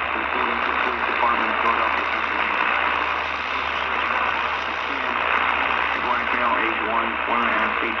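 A voice reading a child abduction emergency alert over AM radio, heard through a small portable radio's speaker, with steady static hiss under it.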